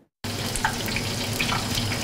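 Stinky tofu deep-frying in a pan of hot oil: a steady sizzle with small crackling pops over a low hum, starting suddenly about a quarter second in.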